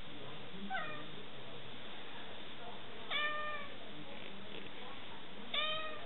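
Domestic cat meowing three times: a short call about a second in, a longer one a little past the middle, and another near the end.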